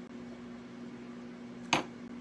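A wine glass is set down on a hard surface with one short, sharp clink about three-quarters of the way through, over a faint steady hum.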